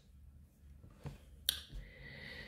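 A single sharp click about one and a half seconds in, against faint room tone: the click that advances the lecture slide.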